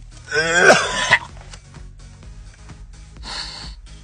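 A man gagging in disgust: one loud, strained retch lasting about a second near the start, then a short breathy exhale about three seconds in.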